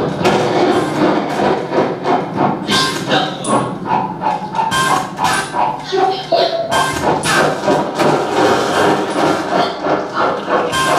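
Live experimental noise music from laptop, electronics and electric guitar: a loud, dense, clattering texture that pulses several times a second.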